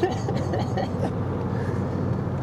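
Steady low road and engine rumble heard from inside a moving car's cabin, with a short laugh about half a second in.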